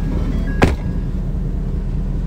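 Low steady hum inside a Ford pickup's cab, with one sharp knock about half a second in.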